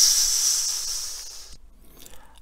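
A man's drawn-out hissed 's' at the end of a long sung-out goodbye, 'tchuuuus', fading away over about a second and a half.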